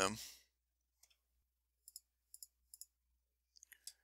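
Faint computer mouse clicks. Three quick double clicks come close together about two seconds in, each pair a button press and release, and a few fainter ticks follow near the end.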